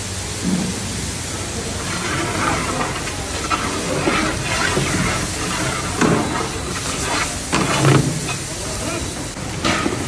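Steady hiss of a large wood-fired karahi of hot oil steaming, with the cook's long ladle knocking against the pan a few times in the second half.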